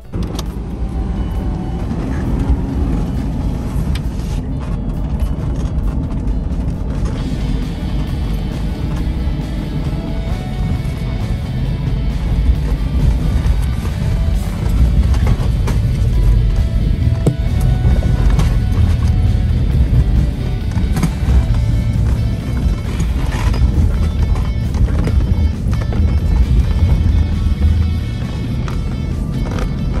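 Toyota Land Cruiser 100 series engine and drivetrain heard from inside the cabin, working steadily up a steep, rocky climb, under background music.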